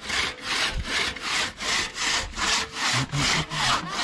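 A hand saw cutting through a wooden log in steady back-and-forth strokes, about three a second, cutting it into small pieces for firewood.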